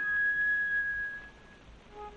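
A flute holds one high note for about a second and it fades away, leaving a short pause filled with the surface hiss of an old 1930 HMV disc recording.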